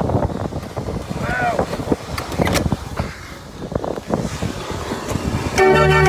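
Knocks and clatter with voices in the background, then about five and a half seconds in a Dutch street organ (draaiorgel) starts playing, loud and sustained.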